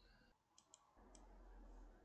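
Near silence with three faint computer mouse clicks in the first half, followed by a faint low hum.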